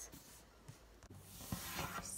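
Faint rustling and rubbing with a few soft knocks, louder in the second half: handling noise close to the microphone.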